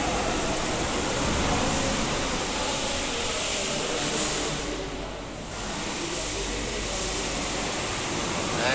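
A steady, hiss-like rushing background noise, with no distinct events, that dips briefly for about a second in the middle.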